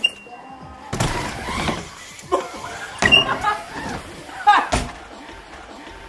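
BMX bike landing with a thump on a wooden ramp about a second in, followed by excited yelling and a second thump a few seconds later.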